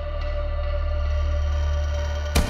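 Ambient background music: held, sustained chords over a steady low bass drone.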